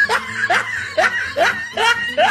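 A person laughing in short, rising bursts, about two or three a second.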